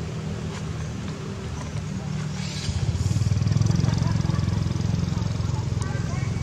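A vehicle engine running with a low, steady rumble that gets louder about halfway through.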